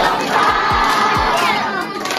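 A large group of children shouting together in one sustained yell that fades near the end.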